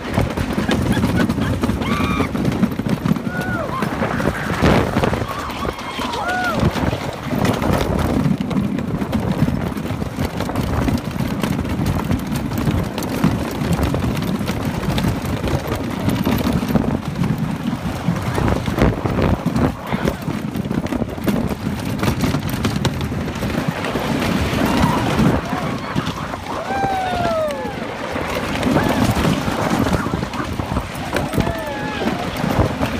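Blue Streak wooden roller coaster train running along its track: a continuous low rumble and rattling clatter of the train over the wooden structure, with wind on the microphone. A few short, high, sliding sounds rise above it about two, three and six seconds in and again near the end.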